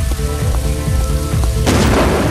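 Heavy rain falling over a pop song's instrumental backing, with a loud thunderclap near the end that trails off into a rumble.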